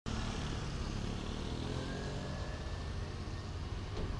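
Street traffic: a motor scooter and small cars going by, a steady low engine hum.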